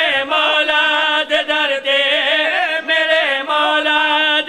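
Male voices chanting a devotional Urdu qasida into a microphone, the melody moving over a steady held drone note.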